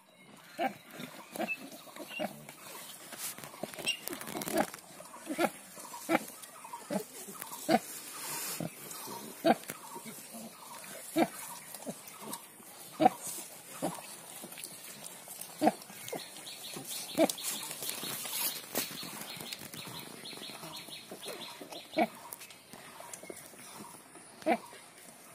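A sow giving short, low grunts about once a second while her litter of piglets suckles, the rhythmic nursing grunts of a suckling bout; they thin out near the end.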